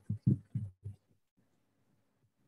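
A brief spoken 'um' and a few short, low voice sounds in the first second, then near silence with only a faint low hum.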